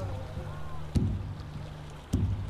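Sound effect of a boat on open water over a low steady drone, with a single thump about a second in.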